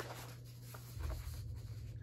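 Faint rustling of paper sheets being handled and shuffled, with a few light ticks, over a steady low hum.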